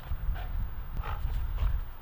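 Belgian Malinois dogs scuffling around a tug toy, with a few short, rough dog sounds over a steady low rumble.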